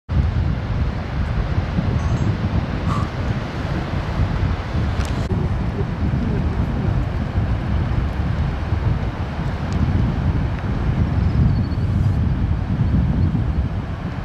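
Wind buffeting the microphone: a loud, uneven rumble, with a couple of brief ticks.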